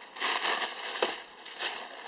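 A thin, flexible sheet rustling and crinkling in the hands as it is handled and flexed, in a few uneven bursts with a couple of small ticks.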